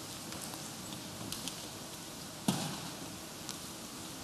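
Quiet room tone with a few faint clicks and one sharper knock about two and a half seconds in.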